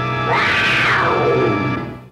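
A cat's long cry, falling steadily in pitch, over a held chord of music; both stop abruptly near the end.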